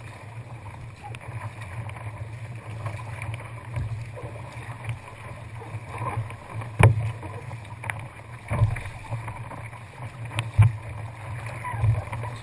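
Choppy sea water rushing and splashing around a paddled kayak over a steady low rumble. Five sharp thumps come in the second half, the loudest about seven seconds in and again about ten and a half seconds in.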